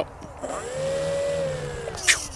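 Radiolink D460's brushless motor and propeller throttled up to a steady whine about half a second in, then easing off and dropping in pitch near the end.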